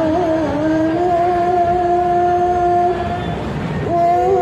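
A woman singing a devotional chant into a handheld microphone. The note wavers briefly, then is held steady for about two and a half seconds, breaks off shortly before the end, and a new note begins right at the end.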